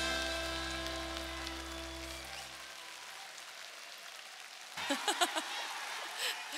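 The band's last held chord at the end of a trot song fades out over the first few seconds, while the audience keeps applauding. Near the end a voice briefly speaks or laughs over the clapping.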